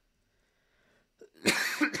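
A person's loud cough near the end, after near silence.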